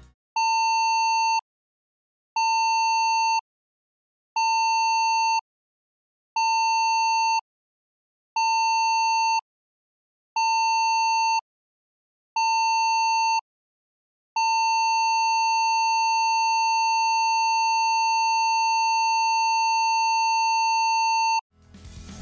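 Cruise ship's general emergency alarm signal: seven short blasts of a steady tone, each about a second long with a second's gap between, then one long blast of about seven seconds.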